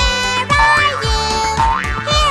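Children's nursery-rhyme backing music with a steady beat. Two quick rising pitch glides, like cartoon sound effects, come about a third of the way in and near the end.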